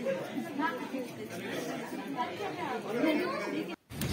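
Background chatter of several women talking at once, with no single clear voice. It breaks off abruptly near the end.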